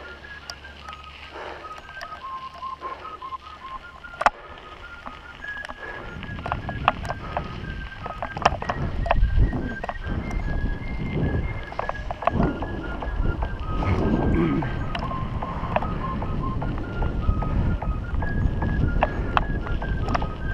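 A person whistling a simple tune in clear single notes that step down in pitch and repeat, over the clatter of a mountain bike riding a gravel dirt track. From about six seconds in, tyre rumble and wind noise grow louder, with sharp clicks and knocks from the bike over the bumps.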